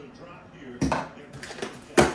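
A blade cutting through the tape on a small cardboard box, with scraping and a few light clicks. Near the end the blade is set down on the tabletop with a sharp clack.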